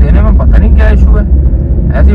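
A man talking for about the first second, over a loud, steady low rumble of road traffic and wind noise from riding.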